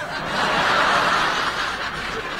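Studio audience laughing at a punchline, swelling to a peak about a second in and then easing off.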